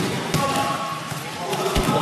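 A few dull thumps of grapplers' bodies hitting tatami mats during a scramble, with people talking in the background.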